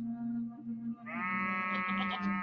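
A goat bleating once, a long steady call starting about a second in, over a low held music drone.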